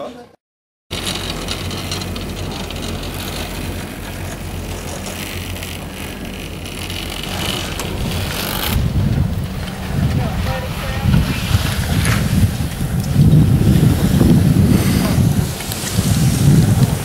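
Wind buffeting the camera microphone on a chairlift ride, over a steady low hum. The wind gusts harder from about halfway through.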